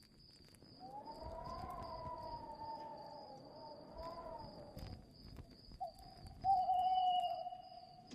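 Faint eerie sound effect: a wavering, wailing tone that rises and falls for about four seconds, then a shorter held tone near the end, over a thin high pulsing chirp.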